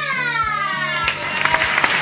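A long, high, falling whoop of excitement, then a family clapping and cheering from about a second in, over a steady background music track.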